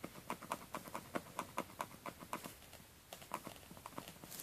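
Light, quick clicking taps of a white Barry M nail art pen's tip being pressed down again and again, about five a second, thinning out to a few scattered clicks after about two and a half seconds.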